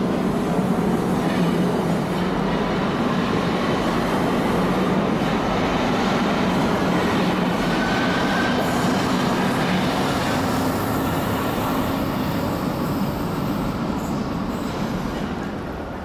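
A DUEWAG U2-type Stadtbahn train pulling out of an underground station and running past, a steady rumble of wheels and motors with a faint high tone rising about halfway through. The sound fades as the last car leaves, near the end.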